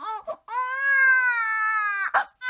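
Infant crying: a few short fussing cries, then one long cry from about half a second in, its pitch falling slightly.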